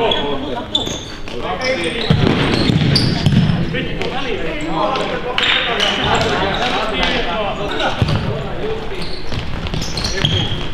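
Futsal game sounds in a sports hall: the ball being kicked and thudding on the hard floor, with indistinct player calls in between.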